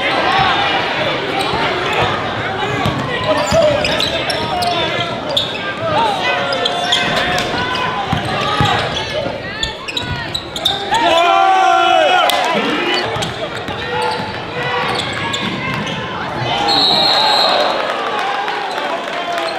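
Live basketball game sound in a gymnasium: a ball bouncing on the hardwood court amid many overlapping crowd and player voices and shouts.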